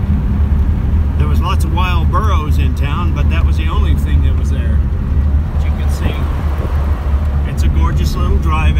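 Steady low drone of an air-cooled car's engine and road noise heard inside the cabin while driving at low speed on a winding road.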